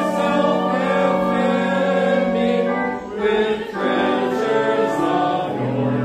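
Congregation singing a hymn together, in long held notes that move from chord to chord, with a short break between phrases about three seconds in.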